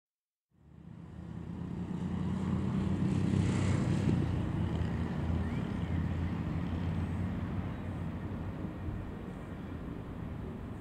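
Low rumble of road traffic, building over the first few seconds and then slowly easing off.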